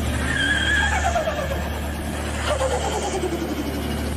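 Car engine revving down, its pitch falling away over about two seconds above a steady low hum.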